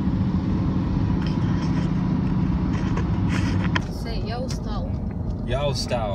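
Steady low road and engine rumble heard inside a moving car's cabin. From about four seconds in it eases a little and voices come in over it.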